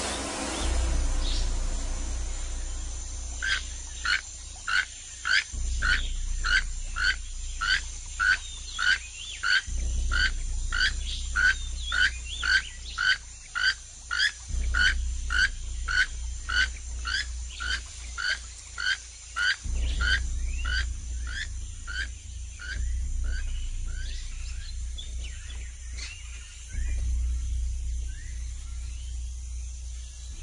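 Jungle ambience with a small animal repeating a short high call about twice a second for some twenty seconds, over a low hum.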